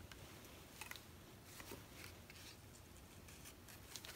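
Near silence with faint, scattered light taps and rustles: a cardboard strip being dipped and pressed against a ceramic tile spread with cell activator, then lifted away.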